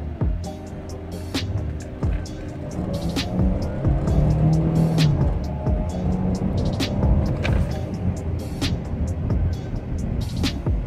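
Pickup truck engine revving up under acceleration, rising in pitch over a few seconds and then dropping back as the revs ease. Music plays over it throughout.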